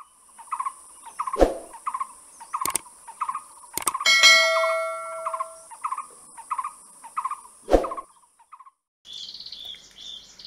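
A bird chirping over and over, about two to three short chirps a second, over a steady high hiss. Several sharp clicks cut in, and a bell-like ding rings for about a second and a half, four seconds in.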